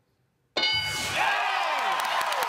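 A moment of silence, then about half a second in the answer board's reveal ding sounds with a low thump. The studio audience breaks into cheering and applause. The chime signals that the answer is on the board as the number one answer.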